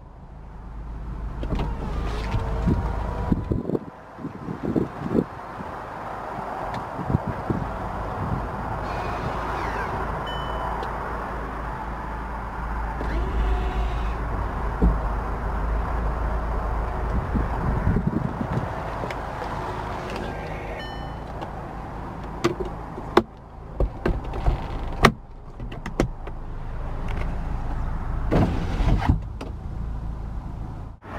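2007 Volkswagen Beetle Convertible's power-operated soft top running through its cycle: a steady electric motor drone for about twenty seconds with a short break about four seconds in. Sharp clicks and clunks come near the end as the roof mechanism locks.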